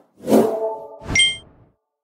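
Sound effects of an animated YouTube subscribe end card: a short rush with a low ringing chord, then a bright ding about a second in that fades within half a second.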